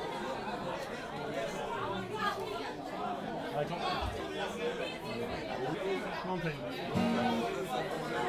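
Indistinct chatter of many people talking at once in a large room, an audience's murmur between songs of a live set, with a brief low musical note about seven seconds in.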